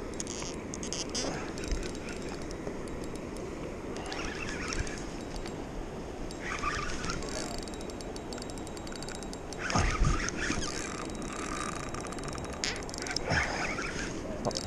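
Spinning reel ticking rapidly while a hooked fish keeps running against the line, over a steady rush of river water. A single thump of handling comes about ten seconds in.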